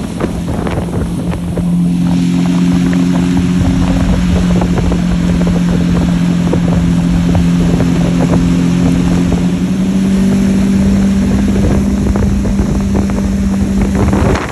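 Lamborghini Aventador's V12 running at a steady cruise, its exhaust note holding one pitch that steps up slightly about ten seconds in. Under it, a constant hiss of tyres spraying water off the wet road, with wind on the microphone.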